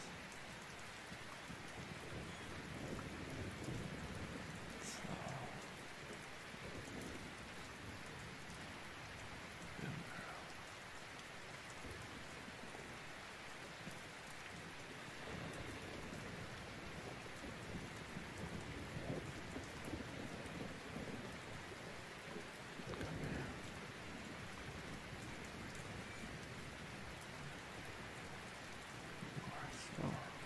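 Steady rain ambience, an even patter with soft low rumbles swelling now and then.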